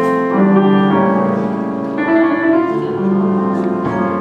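Piano playing slow, held chords, a new chord struck about every second.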